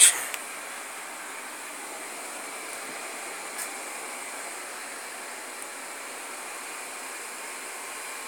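Steady, even background hiss, with one faint tick about three and a half seconds in.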